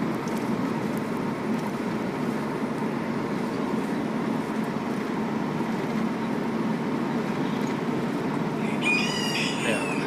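A rooster crowing once near the end, over a steady background noise.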